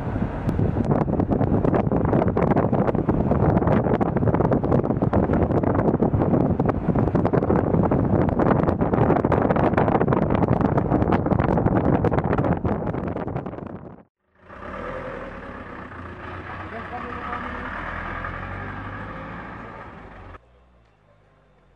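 A car driving along a rough road, heard from inside the moving car: a loud, steady rumble with many small clicks and knocks. After a sudden cut about two-thirds of the way through, quieter voices of people talking take over.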